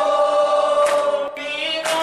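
Unaccompanied Urdu noha, a Shia mourning elegy, sung by a man and a boy together at one microphone in long, held, slightly wavering notes.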